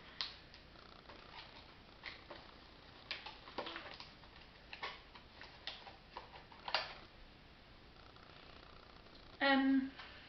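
Foil takeaway container being opened by hand: small clicks and crinkles as the crimped foil edge is bent back and the cardboard lid is pried off, irregular over several seconds. A brief vocal sound near the end.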